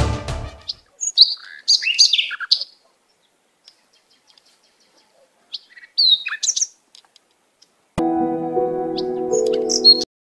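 Birds chirping in short high calls, in two bouts. Near the end a sustained music chord comes in suddenly and cuts off.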